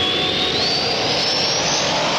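Jet-like rushing sound effect from a radio show's break bumper, with a whistle that rises steadily in pitch over a loud, even rush.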